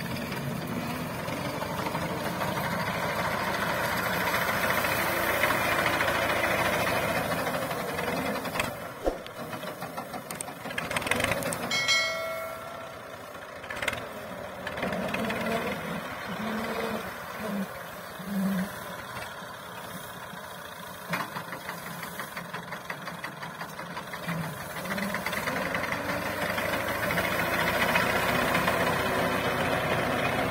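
Tractor engine running and driving a front-mounted wheat reaper cutting standing wheat, with a dense mechanical clatter. It is louder at the start and again near the end, quieter in the middle. About twelve seconds in there is a short high-pitched note.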